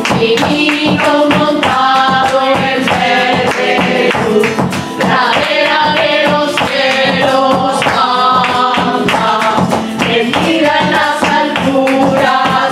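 Live flamenco song: several women singing together over rhythmic hand clapping (palmas), with maracas shaken and a flamenco guitar playing underneath.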